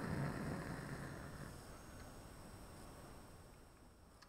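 Bunsen burner flame roar, fading steadily over a few seconds as the air hole is closed and the hot blue flame turns to a quiet yellow safety flame.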